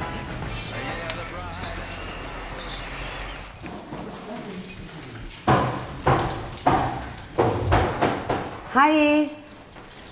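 Background music fading out, then a run of irregular sharp knocks and clatter echoing in a tiled washroom, with a short voiced sound near the end.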